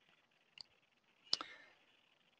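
Two computer mouse clicks: a faint one about half a second in and a sharper, louder one a little past the middle, made while zooming in on a capture in analyser software.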